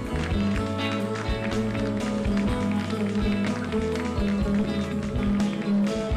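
Live band playing an instrumental passage of a Turkish folk song: bağlama (saz) and violin over a drum kit keeping the beat.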